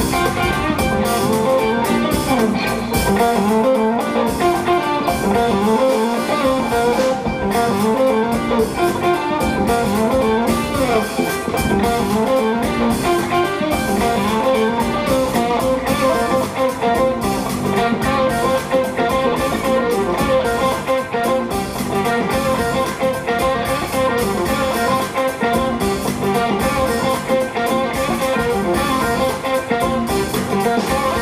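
A live jazz quartet playing: a hollow-body electric guitar to the fore over a drum kit with busy cymbals, with piano and electric bass.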